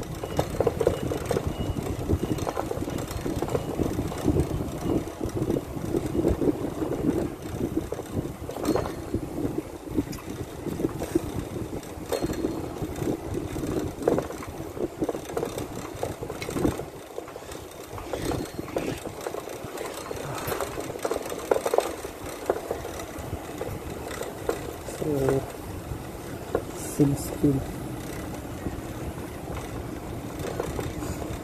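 Rumble and wind noise from a bicycle rolling along a paved path, with a muffled voice now and then. The low rumble eases off briefly about halfway through.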